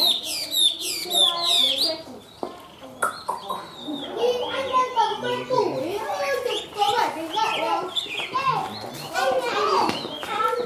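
Caged Chinese hwamei singing a loud, varied song of rapid whistled notes that slide up and down. There is a short break about two seconds in, then it resumes with lower, fuller phrases.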